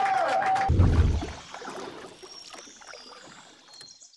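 The tail of a crowd cheering with a held whistle, cut off about two-thirds of a second in by a deep whoosh-thump, which trails off into a fading airy hiss with faint high chiming tones: an editing transition sound into the channel's end card.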